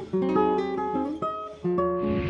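Classical guitar played fingerstyle: a run of plucked, ringing notes over a bass line, with a brief dip near the end before the next phrase begins.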